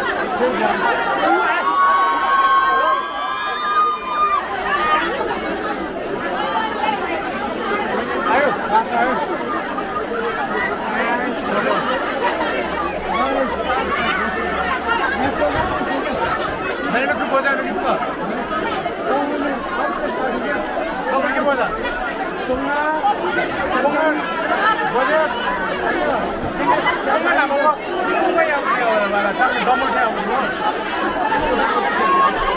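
A large, tightly packed crowd, mostly women and girls, chattering and calling out all at once in a dense, continuous babble of voices. A shrill, wavering sound rises above the crowd from about two to four seconds in.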